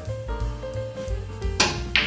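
Background jazz music with bass and drums plays throughout. Near the end come a sharp click of the cue striking the cue ball and, a moment later, a click of the cue ball hitting another ball.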